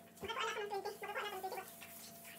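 Dog whining and yowling in a few short, wavering calls that stop shortly before the end.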